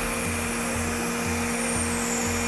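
Hydraulics of a Terex XT Pro 60 bucket truck running as the lower boom unfolds: a steady hum and whine with a hiss over it.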